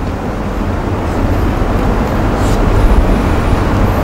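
A steady low rumbling noise that grows slightly louder in the second half.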